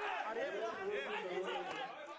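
Crowd chatter: many voices talking over one another, steady throughout.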